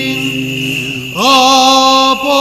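Greek Orthodox liturgical chanting: voices holding long, steady notes over a lower sustained note. Just after a second in, a louder voice enters on a rising note and holds it.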